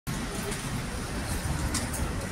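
Street traffic ambience: a steady wash of traffic noise with a low rumble and a few brief ticks near the end.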